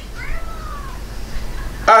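A cat meowing faintly once, the call falling in pitch over about a second, with a low steady hum underneath.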